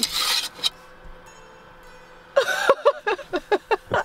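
A brief rustling rummage through a cupboard of kitchen odds and ends, then a person laughing in short repeated bursts from a little over halfway in.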